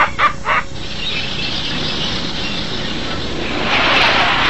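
A cartoon villain's cackling laugh for the first half-second, then a steady rushing noise that swells louder near the end.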